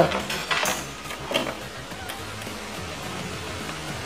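Faint music underneath, with two light clicks from a cable plug being handled and pushed into the mixer's input jacks, about half a second and a second and a half in.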